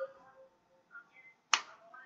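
A single sharp click about one and a half seconds in, dying away quickly, between stretches of near quiet.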